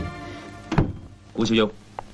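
A single dull thunk about three-quarters of a second in, the loudest sound here, followed by a man's voice calling out briefly.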